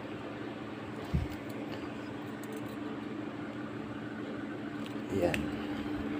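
Steady low hum with two constant tones, and a single low thump about a second in as a PVC conduit is handled and bent by hand.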